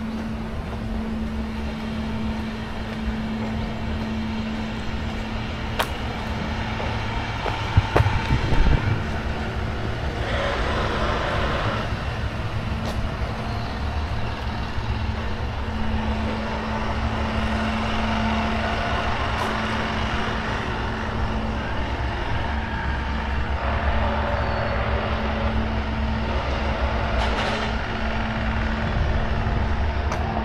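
Steady low rumble and hum of motor traffic, with two swells as vehicles pass and a few brief knocks about eight seconds in.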